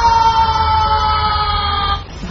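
A man's long, high-pitched yell held on one slowly falling note, cut off abruptly at the end: a fighter's shout of effort as he unleashes all his strength.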